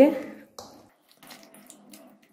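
A woman's voice trails off in the first half-second, then hands squish chicken pieces through a thick yogurt marinade in a steel bowl: faint, wet squelching with small clicks.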